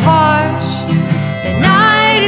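Country band playing an instrumental passage between sung lines: strummed acoustic guitar, an acoustic lap steel guitar sliding between notes, and accordion holding chords.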